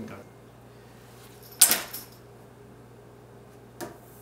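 Something slammed down hard on a kitchen countertop: one sharp, loud bang about one and a half seconds in, with a short ringing tail, then a much smaller knock near the end.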